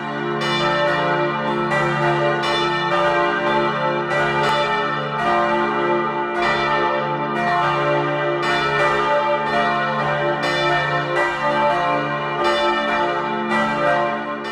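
Several church bells of the St. Johanniskirche in Plauen pealing together, overlapping strikes with long ringing tails, fading out near the end.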